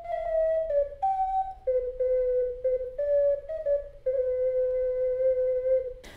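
12-hole ocarina playing a short tune of single notes stepping up and down among a few pitches, ending on one long held low note about four seconds in.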